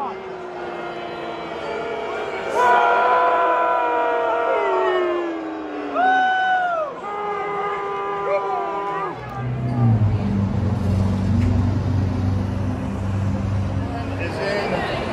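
Ballpark public-address announcer introducing a batter, the drawn-out words echoing around the stadium. About nine seconds in, this gives way to a steady low rumble.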